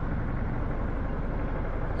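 Steady low rumble of a car running, mixed with wind noise on a camera held out of the car window.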